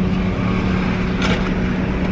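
Inside a car cabin: a steady engine hum over a low rumble, with a brief rustle about a second and a quarter in.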